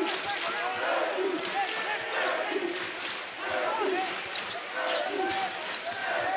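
A basketball being dribbled on a hardwood court, with sneakers squeaking in short chirps and the arena crowd murmuring in the background.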